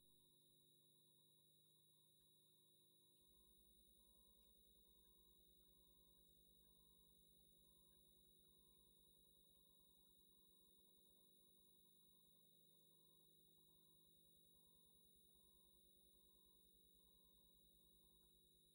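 Near silence from a muted audio feed, with only very faint steady electronic tones.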